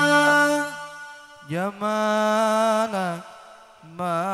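The hadroh frame drums stop and a held sung note fades out; after a short pause a solo male voice sings unaccompanied, rising into one long held note, in the style of Arabic sholawat.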